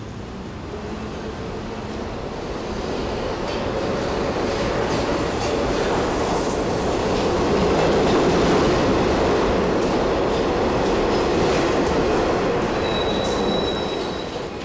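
Electric commuter train running slowly into a station platform, its rumble swelling to a peak midway and then easing as it slows. A brief high wheel squeal comes near the end.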